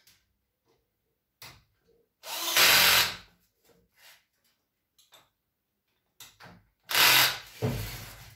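Cordless drill running in short bursts as it drives the screws on an electric water pump's stainless steel housing: a brief blip, a run of about a second a couple of seconds in, a few short blips, then another strong run near the end.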